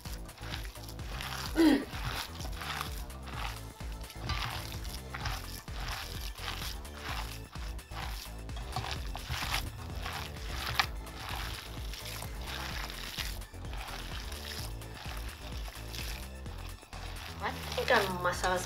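Wet squelching and squeezing of hands kneading seasoned minced pork in a stainless steel bowl, over background music.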